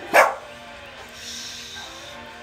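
A single loud, sharp dog bark about a quarter of a second in, over background guitar music.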